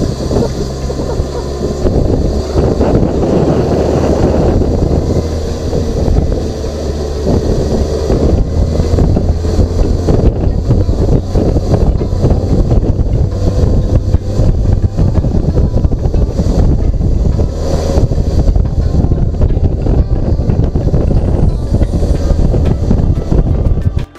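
Wind buffeting the microphone of a camera on a moving motorcycle, loud and rumbling, over the steady low drone of the bike's engine at cruising speed.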